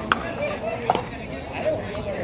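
Paddleball rally: sharp cracks of paddles striking the rubber ball and the ball hitting the concrete wall, twice about a second apart, with players' voices behind.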